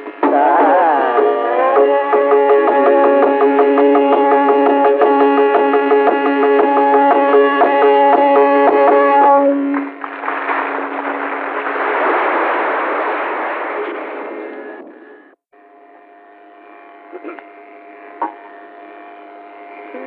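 Carnatic vocal concert music: the voice ends a phrase, then the ensemble holds a long final note over regular percussion strokes. Audience applause follows, swelling and then fading over about five seconds. After a sudden break in the recording, only a quiet steady drone remains, with a couple of faint clicks.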